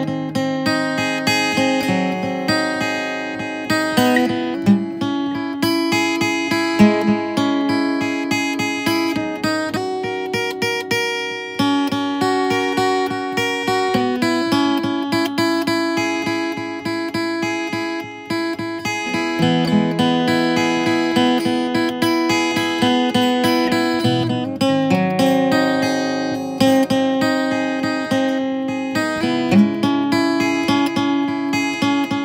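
Background music: acoustic guitar playing a continuous run of plucked and strummed notes.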